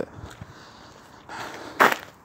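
Faint background hiss, then near the end a short, loud rush of noise.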